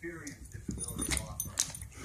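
A dog vocalizing, with a few sharp clicks near the middle, over a television talking in the background.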